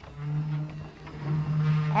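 Vacuum cleaner running with a steady low hum, its level rising and falling as it is moved about. A woman's voice comes in near the end.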